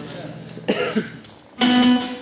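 A single loud musical note, held steady in pitch for under half a second near the end, after a stretch of quieter stage sounds.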